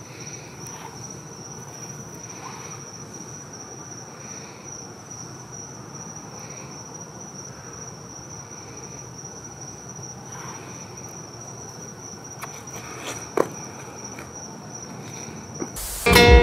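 Crickets trilling steadily at night, with a man's slow heavy breathing into a headset microphone. There are a couple of sharp clicks near the end.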